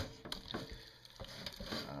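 Hands rubbing and massaging a wet seasoning marinade into a raw pork shoulder in a pot, with a few soft clicks and wet handling sounds in the first half second.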